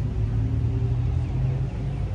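Steady low rumble with faint held tones above it.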